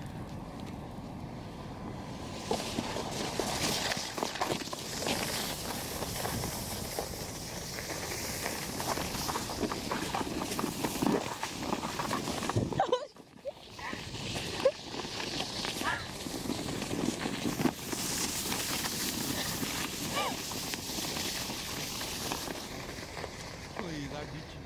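A sled sliding down a snowy slope: a steady, noisy scraping hiss of snow under the sled, broken off briefly about halfway through.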